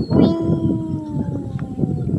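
A single long howl-like call that starts just after the beginning and slowly falls in pitch for nearly two seconds.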